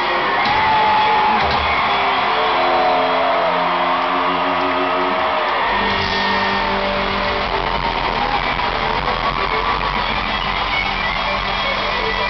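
Live country band with an electric guitar solo of bending, sliding notes over the band, recorded from the audience. The bass end of the band fills out about halfway through.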